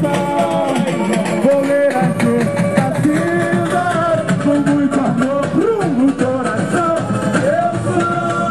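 Samba school parade music: a samba-enredo sung by a lead voice over the steady, dense beat of the school's drum section.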